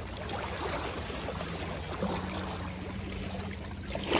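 Lake water lapping and sloshing at the shoreline rocks and around a person wading waist-deep.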